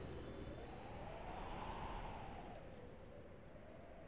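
The tail end of a 1994 Mandopop song fading out: a shimmer of wind chimes that dies away about two-thirds of the way in, over a faint sustained wash that keeps fading.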